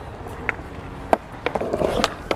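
Skateboard wheels rolling over stone paving, with a couple of sharp clicks about half a second and a second in, and the rolling growing louder near the end as the skater sets up a trick.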